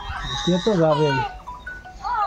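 A farm animal's bleating call, starting about half a second in and lasting under a second, with people's voices around it.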